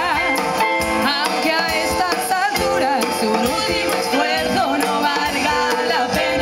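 Live band performance with women singing at microphones over the band, the voices wavering with vibrato.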